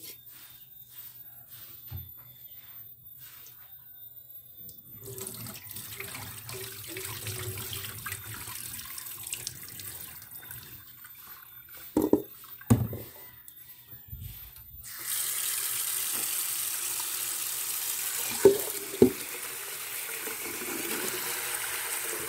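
Tap water running into a stainless steel pot of rice being rinsed at a sink. The steady stream comes on about two-thirds of the way through. Before it there is quieter water movement and a few dull knocks of the pot being handled.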